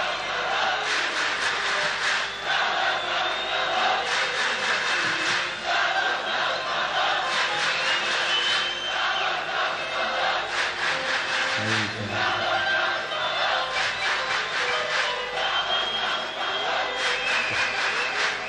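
A large concert crowd cheering and shouting over live orchestral music.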